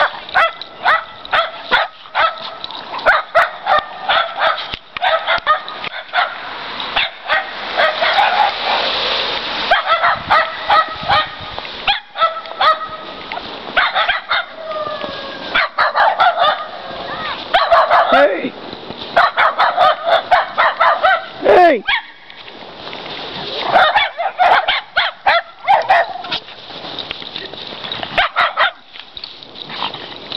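Cairn terriers barking and yipping excitedly in quick, high-pitched bursts while hunting for critters in the snow, with a short falling yelp and a brief lull about two-thirds of the way through.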